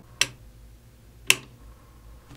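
Two sharp clicks about a second apart: the power switch on the side of an electric rotating display turntable flicked off and back on. Under them, the turntable's motor runs with a faint low hum while it carries a 10-pound weight plate.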